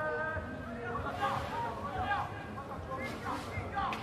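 Indistinct voices talking and calling out, over a background hubbub of chatter.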